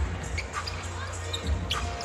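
A basketball being dribbled on a hardwood arena court during live play: repeated low thuds over steady arena noise, with a few short sharp knocks and squeaks.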